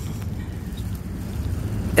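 Steady low rumble of wind buffeting a phone microphone outdoors.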